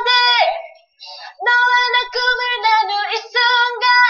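A young woman singing solo in a high, clear voice, holding notes; she breaks off briefly about a second in, then carries on.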